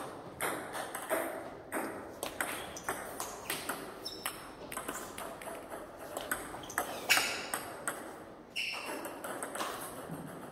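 Table tennis ball striking bats and the table during pendulum serves and their returns: a steady run of sharp plastic clicks, roughly two a second, with short pauses between points and the loudest hit about seven seconds in.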